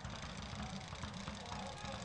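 Faint stadium field ambience at a soccer match: a steady low rumble with faint, distant voices from the players and a sparse crowd.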